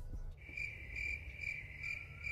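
Cricket chirping, a steady high pulsing chirp repeating about twice a second, starting about half a second in: the comic 'crickets' effect over an awkward pause.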